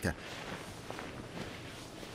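Faint rustling of bedclothes, with a couple of soft ticks in the middle.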